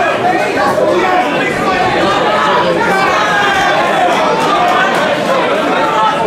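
Ringside crowd chatter: many voices talking and calling out over one another in a large, echoing hall.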